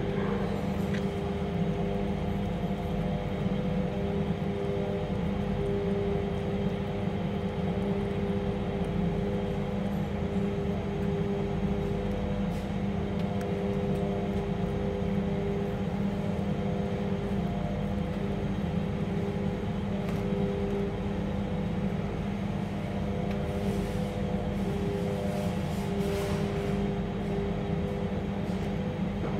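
Steady machine hum with a few steady tones, unchanging throughout, with a few faint light clicks near the end.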